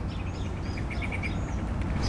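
Small birds chirping in short, high calls, with a quick run of repeated notes a little after a second in, over a steady low outdoor background rumble.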